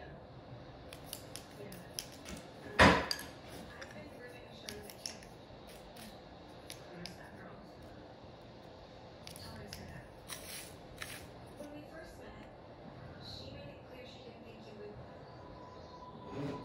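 Light scattered clicks and taps as rhinestones are picked from plastic jars with a wax pick-up pencil and set on long acrylic nails, with one louder sharp click about three seconds in.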